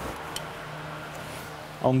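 Lathe's four-jaw chuck turned slowly by hand, with a couple of faint clicks near the start over a steady low hum: the workpiece is being rotated against a dial indicator to check its runout.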